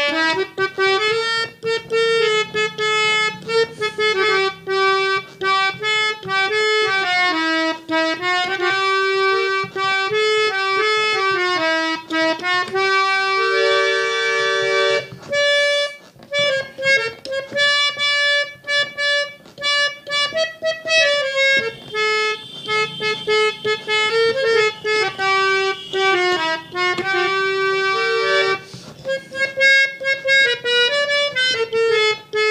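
Harmonium playing a lively melodic tune (dhun), the notes moving quickly up and down with short breaks between phrases. About halfway through it holds a two-note chord for a couple of seconds.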